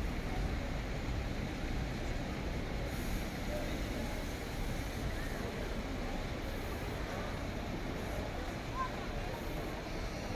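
Steady city street noise: a low traffic rumble with no single standout event.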